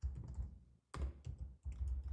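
Computer keyboard being typed on: a few short clusters of keystrokes with brief pauses between them.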